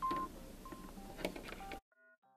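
Faint room noise with a few short, high beeps and a couple of clicks, cutting off suddenly near the end.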